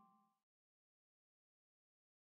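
Near silence: the last faint trace of background music dies away within the first half second, then the track is completely silent.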